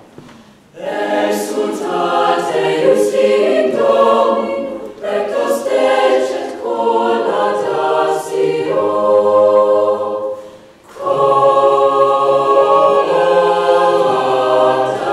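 Mixed-voice choir singing a Renaissance motet, with crisp "s" consonants. The singing breaks off briefly right at the start and again about eleven seconds in, then settles into a held chord.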